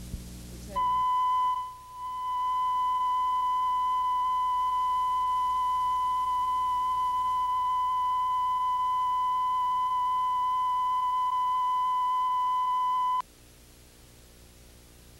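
Steady test tone played with colour bars, the line-up tone of a videotape leader. It starts just under a second in, dips briefly about a second later, then holds level until it cuts off suddenly near the end.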